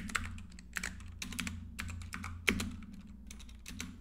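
Typing on a computer keyboard: a run of quick, irregular keystrokes as a short phrase is entered.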